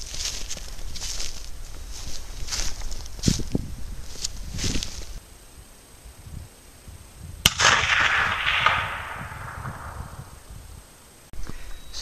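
Footsteps crunching in snow, about two a second, for the first five seconds. About seven and a half seconds in, a single shot from an Eddystone US Model of 1917 .30-06 bolt-action rifle, followed by an echo that fades over about two seconds.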